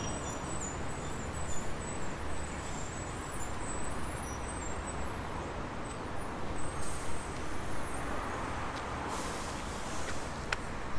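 Steady city road traffic, with buses and cars passing on a busy street.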